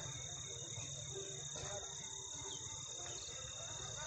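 Steady, high-pitched insect chorus, like crickets, running without a break, with a low rumble underneath.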